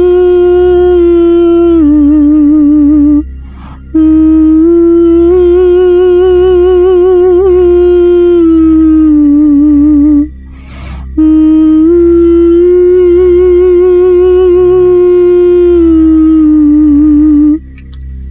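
A woman's plaintive, wordless singing sound effect standing for a langsuir's song: long wavering notes that step up and down, in three phrases with short breaks between them, over a steady low drone.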